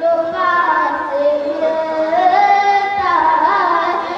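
A boy singing a naat into a stage microphone, holding long notes and sliding between them in ornamented glides.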